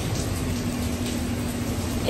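Heavy rain and city traffic on a wet street: a steady hiss over a low rumble, with a low steady hum coming in about half a second in.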